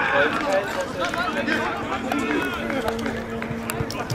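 Several voices calling and talking across an outdoor football pitch. A steady low hum runs under them from about a second in, and a few sharp knocks come near the end.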